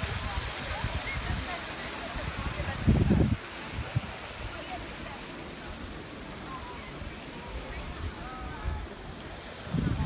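Wind buffeting a phone's microphone in uneven gusts, the strongest about three seconds in, over the hiss of fountain water that thins after the first few seconds. Faint voices of a crowd of people carry through.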